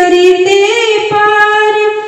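A woman singing a Hindi poem in long, held notes, the melody stepping up in pitch partway through.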